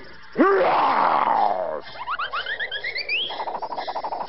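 Cartoon soundtrack: a loud sound effect that jumps up in pitch and then slides slowly down for about a second and a half, followed by a quick run of rising whistle-like glides that lead into music.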